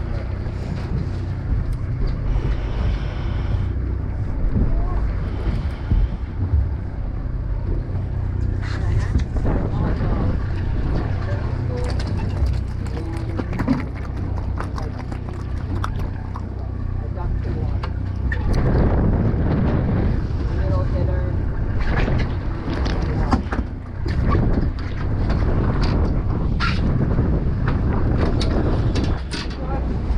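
A boat's engine running with a steady low hum, with wind buffeting the microphone. Scattered knocks and rustles of handling gear and a fish come on top of it.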